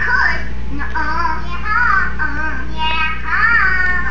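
A high, childlike cartoon voice singing a melody with bending, wavering notes over soundtrack music, played back from a TV and picked up by a phone, with a steady low hum underneath.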